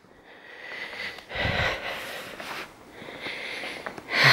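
Soft, noisy breaths and sniffs close to the microphone, from the person holding the camera, with a dull low bump about a second and a half in.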